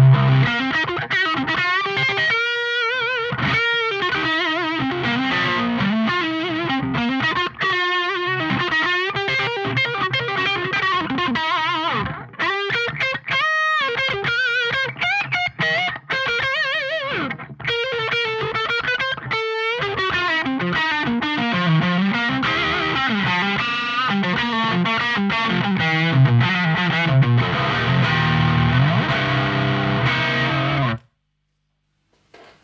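Electric guitar played through a Victory Silverback valve amp on a saturated, overdriven channel, on the neck pickup: bluesy lead lines with string bends and vibrato mixed with chords, broken by a few short pauses near the middle.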